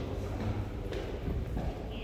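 Footsteps knocking on a hard polished stone floor, with people's voices faint in the background.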